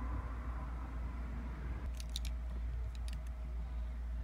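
A steady low background rumble, with a few light clicks about two seconds in as a smartphone is handled and its touchscreen tapped.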